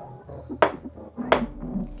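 A tall drinking glass knocked twice against a stone bar top: two sharp knocks about three quarters of a second apart.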